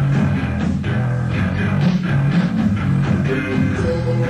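Live rock band playing an instrumental passage: electric guitar over bass guitar and drums, with a steady beat.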